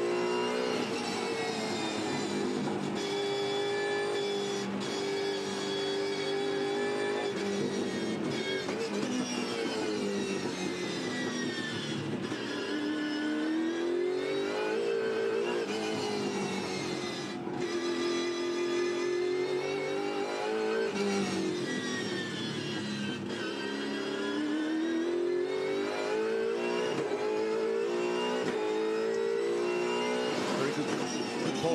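V8 Supercars race car engine at racing speed, heard on board. Its pitch climbs under acceleration and falls back on braking into the corners, again and again, with a brief lift partway through.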